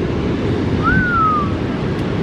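Steady rush of ocean surf breaking on a beach. About a second in, one short whistle rises briefly and then glides down in pitch.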